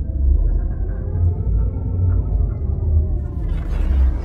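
Cinematic logo-intro sound design: a deep, steady rumbling drone with faint held tones above it.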